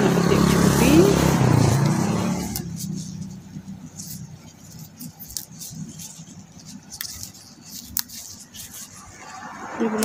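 A motor vehicle engine running, its pitch rising, loud for the first two seconds or so and then fading away. After that it is quiet, with a few scattered light clicks and rustles.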